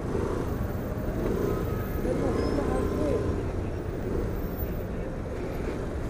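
Steady low rumble of a Suzuki scooter riding slowly in traffic, its engine mixed with wind on the microphone, with faint voices about two to three seconds in.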